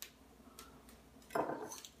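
Small wheat seeds spilling from a hand and scattering on the floor: a few faint ticks, then a short rattling patter in the last half second.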